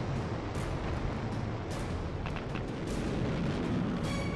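Steady low rumbling roar of rocket thrusters: a sound effect for Curiosity's descent stage firing as it lowers the rover, with faint crackles running through it.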